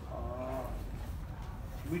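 A man's voice making a short drawn-out vocal sound with a wavering pitch, then the start of a spoken word at the very end, over a steady low rumble.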